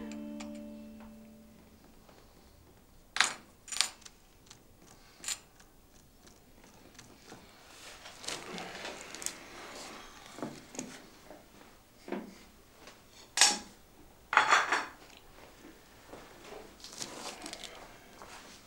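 Plates, bowls and cutlery clinking and scraping as dishes are gathered up off a table: a handful of sharp, separate clinks with quieter handling between them.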